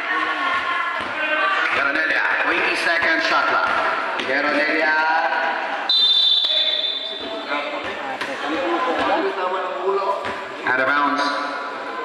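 Basketball game sounds: voices calling out and the ball bouncing on the court. About six seconds in, a referee's whistle gives one shrill blast lasting about a second.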